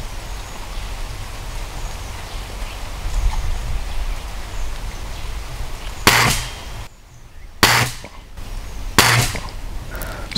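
Spring-piston air rifle firing: three sharp shots about a second and a half apart in the second half, after a stretch of low wind rumble on the microphone.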